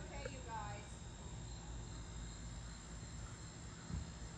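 Steady high-pitched insect chorus of crickets over a low rumble, with brief faint voices in the first second.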